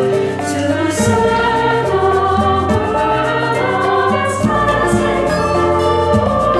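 Choir singing a hymn with instrumental accompaniment, in long held notes over a steady bass line.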